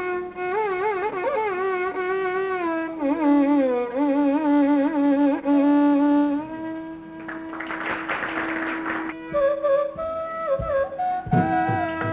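Carnatic classical melody in raga Reethigowla on bamboo flute with violin, the line bending and shaking through ornamented slides for several seconds, then settling on a long held note. Low drum strokes, as from a mridangam, come in about a second before the end.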